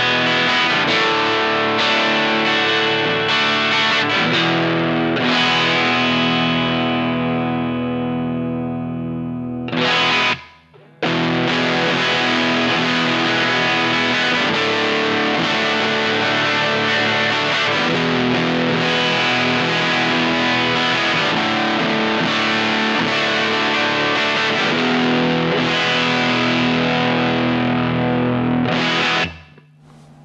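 Electric guitar on a Telecaster's bridge pickup, played through a modded Vox AC4 single-EL84 class A valve amp with crunchy overdrive. It is first on the amp's faux-Fender setting, where a straightforward breakup rings out and fades before a brief break about ten seconds in. It is then on the modded Marshall Class 5 setting, a really fat tone with a lot of mids and bass and more saturation from the extra gain stage, and the playing stops shortly before the end.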